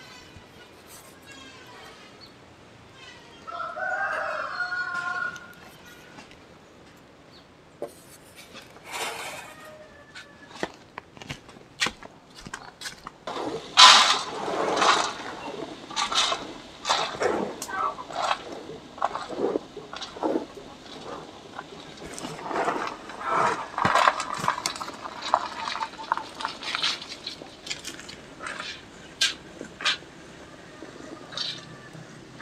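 A rooster crows once, about four seconds in. From about halfway through, dried cassava granules (oyek) pour into a metal steamer pot: a dense, uneven run of small clicks as the grains hit the metal.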